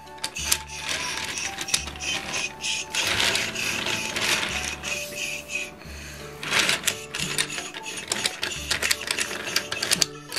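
Die-cast toy train engine and milk tanker wagon pushed by hand along a plastic playset track, wheels rattling and clicking rapidly, over background music with a regular bass beat.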